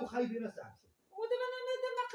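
A woman's voice: quick speech at first, then, after a brief pause, a long drawn-out high-pitched vowel sound about a second in.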